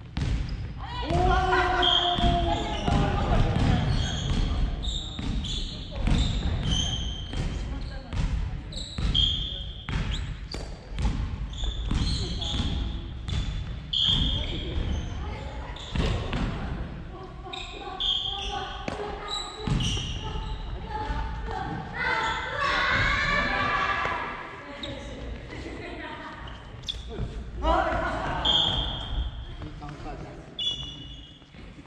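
Family badminton doubles rally in a large, echoing sports hall: a string of sharp racket-on-shuttlecock hits and footfalls, with sneakers squeaking on the wooden floor. Players' voices are heard a few times.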